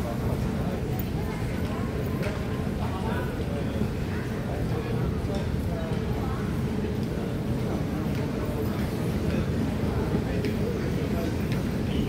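Airport terminal hall ambience: indistinct voices of other travellers over a steady low rumble, with footsteps on the hard floor.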